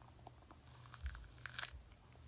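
A small orange pepper being pulled apart by hand, its crisp flesh cracking and tearing in a few faint crackles, the loudest about a second and a half in.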